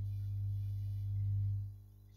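Steady low electrical hum that fades out shortly before the end.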